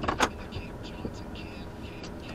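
Car interior noise as the car rolls to a stop, a steady low rumble, with two sharp clicks about a quarter second apart right at the start.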